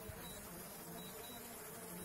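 DJI Mavic Pro quadcopter's propellers buzzing faintly and steadily high overhead as it comes down to land.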